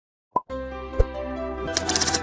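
After a moment of silence, a short rising 'plop' sound effect, then intro music starts with a soft hit about a second in. Near the end, quick keyboard-typing clicks join the music.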